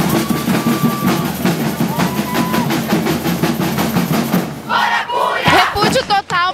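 Protest drumming with a steady quick beat, about four strikes a second, under a crowd chanting and singing. The drumming stops about four and a half seconds in.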